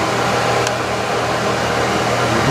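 1997 Broan ceiling exhaust fan running, a steady low hum under the even rush of air through the grille.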